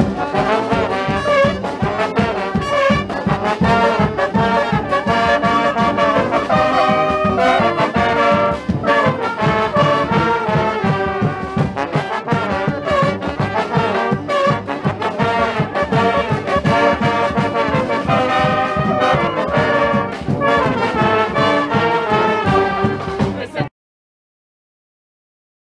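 A street brass band playing: sousaphone, trombones, saxophones and trumpet together over a steady rhythm. The music cuts off suddenly just before the end.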